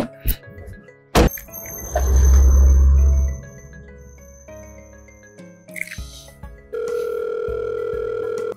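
Background film music, with a sharp click just over a second in and a loud deep rumble lasting about a second and a half. Near the end a phone's ringback tone starts, a steady single tone showing that the outgoing call is ringing at the other end.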